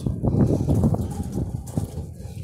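Footsteps on a concrete sidewalk, a run of uneven knocks, over a low rumble of handling and wind noise on a handheld phone's microphone as its holder walks.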